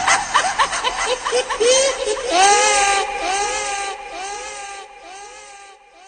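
A high-pitched cackling laugh: a quick run of short 'ha's that slows and fades away.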